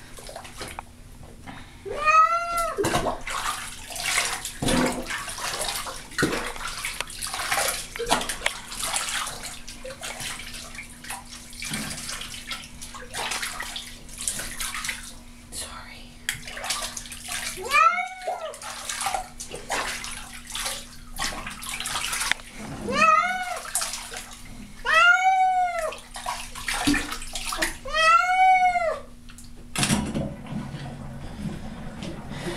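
A domestic cat meowing in protest while being bathed: five drawn-out calls, each rising then falling in pitch, the loudest sounds here. Between them, bathwater splashes and sloshes as the cat's fur is scrubbed.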